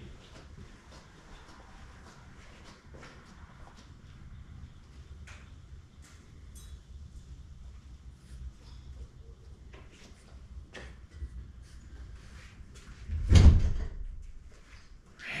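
Faint scattered clicks and knocks over a low rumble, then a single loud bang of a door shutting about thirteen seconds in.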